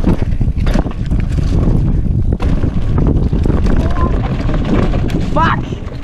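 Mountain bike, a 2019 Specialized Stumpjumper 29 alloy, descending a rough dirt trail: a steady rumble of tyres on dirt with knocks and rattles from the bike over bumps, and wind buffeting the action camera's microphone.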